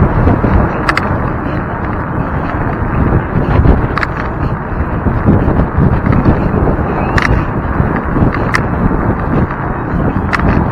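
Wind rushing over the microphone of a moving electric scooter, a steady loud rumble, with a few brief sharp clicks about a second in, near the middle and near the end.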